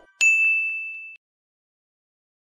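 A single bright ding, a notification-bell sound effect, rings out a moment in. It decays for about a second and then cuts off suddenly.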